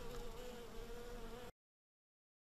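Ligurian honeybees buzzing at a wooden hive entrance: a faint, steady hum that wavers slightly in pitch and cuts off suddenly about one and a half seconds in.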